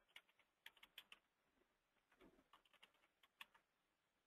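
Faint computer keyboard typing: a few scattered keystrokes as a date is keyed into a field.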